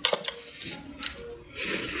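A sharp clink of tableware with a brief ring, then a couple of lighter clinks. Near the end comes the wet tearing of a bite into a roast goose leg.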